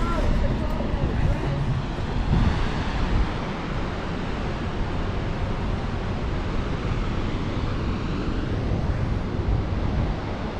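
Steady rushing roar of the Great Falls of the Passaic River, with wind buffeting the microphone.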